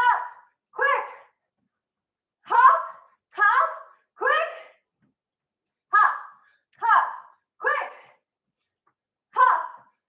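A woman's short vocal sounds during exercise, in groups of three about every three and a half seconds, in time with the hold-hold-quick rhythm of her mountain-climber hops. Each sound is brief and fades quickly, with silence between the groups.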